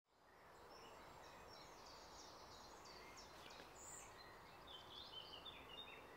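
Faint outdoor ambience: a steady hiss with scattered short high chirps, fading in over the first half second.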